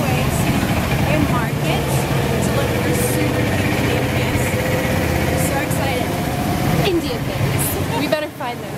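A motor vehicle engine running steadily close by in street traffic, with voices over it.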